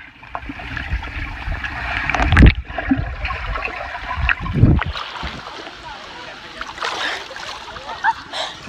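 Underwater sound picked up by a phone microphone submerged in a swimming pool: muffled water noise with crackly bubbling and two dull thumps, about two and a half and four and a half seconds in.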